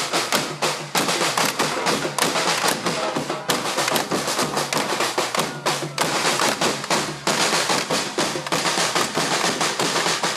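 Carnival comparsa percussion band (batucada) playing a fast, steady samba-style rhythm on drums and hand percussion, with dense sharp strikes.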